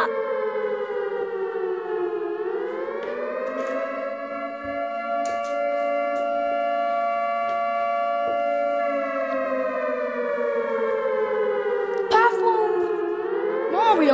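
Tornado warning siren wailing: one long pitched wail that falls, rises again about three seconds in, holds steady for several seconds, then falls away and starts rising once more near the end. It signals a tornado warning.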